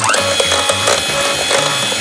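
Electric hand mixer switched on at the start and running steadily, its beaters whisking egg whites with a pinch of salt in a metal bowl to beat them stiff.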